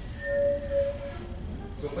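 A single steady, mid-pitched wind-instrument note held for about a second.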